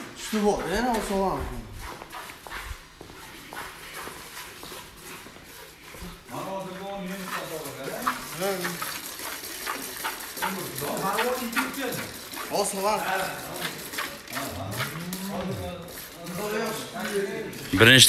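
Streams of milk squirting into a galvanized steel bucket as a cow is milked by hand, with people talking quietly throughout.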